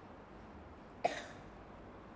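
A single short cough from a man close to the microphone, about a second in, over quiet room tone.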